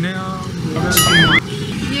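People talking in the street, with a brief high, wavering whistle-like tone about a second in, lasting about half a second.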